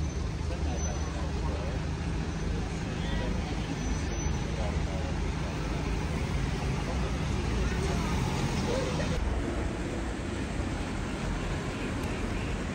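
City street traffic: cars driving past close by with a steady low engine and tyre rumble, and indistinct voices of passers-by.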